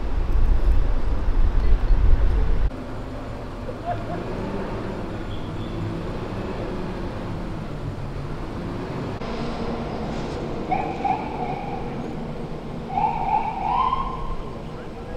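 Wind buffeting the microphone as a loud low rumble for the first few seconds, cutting off suddenly, then a steady low hum of city street ambience with traffic, and faint voices near the end.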